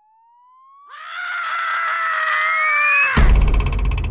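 Edited sound effects: a steadily rising pitch sweep, with a long held scream coming in about a second in. About three seconds in, a sudden loud, distorted bass hit buzzes in rapid pulses.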